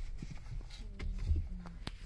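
Low, steady rumble inside a car cabin with the engine running, under a few small knocks and one sharp click near the end.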